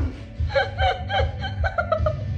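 A person laughing in short repeated bursts, starting about half a second in.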